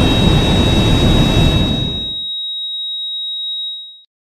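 Jet airliner engine noise, a steady rush that fades out about two seconds in. A steady high-pitched electronic tone sounds over it and carries on alone until it cuts off near the end.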